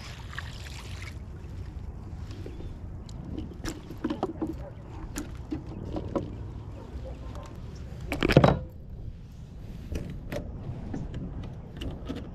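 Knocks and scrapes of a landed sheepshead and fishing gear being handled in a plastic kayak, with a louder burst of knocking about eight seconds in, over a steady low rumble.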